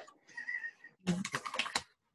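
Typing on a computer keyboard: a quick run of clicks about a second in, heard through video-call audio.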